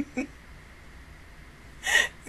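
A woman laughing: short bursts of laughter at the start, then a loud, breathy gasp of laughter near the end.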